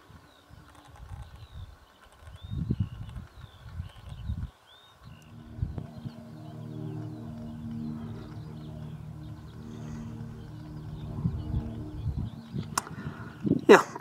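Outdoor ambience: gusts of wind rumbling on the microphone, with faint chirps of small birds. From about five seconds in a steady low hum joins them, and there is one sharp click near the end.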